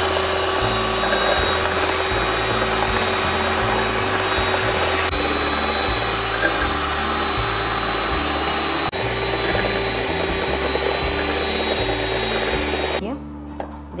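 Electric hand mixer running at high speed, its steel beaters whisking instant coffee and sugar in a steel bowl into a thick foam: a steady motor whine over a whirring hiss, stopping about a second before the end.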